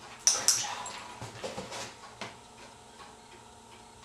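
A dog crunching a piece of carrot, its training reward: two loud, crisp crunches in quick succession, then a few softer chews.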